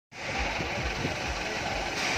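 Engine of a parked minibus idling steadily.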